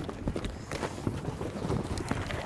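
A heavy plastic tarp being dragged off a sand pile, its sheeting rustling and crackling in a quick, irregular run of scuffs, with footsteps.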